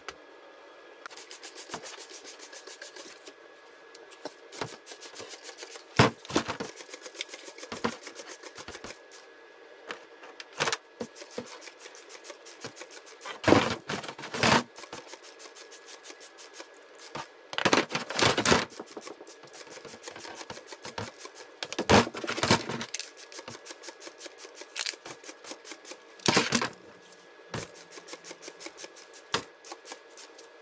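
Plastic chainsaw housings and parts being scrubbed and handled in a plastic tub: runs of quick brushing and scraping strokes, with a few louder clatters of parts being knocked and moved.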